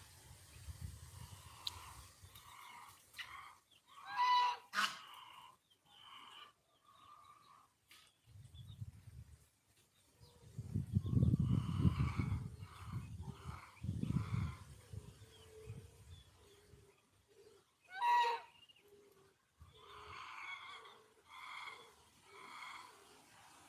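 Backyard poultry calling: scattered short calls from chickens and young birds, with two loud, sharply falling calls, one about four seconds in and one near eighteen seconds. A low rumble runs through the middle, the loudest part.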